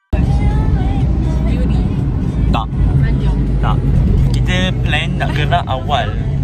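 Steady low rumble of a running car heard from inside the cabin, cutting in suddenly at the start, with people talking over it from about two and a half seconds in.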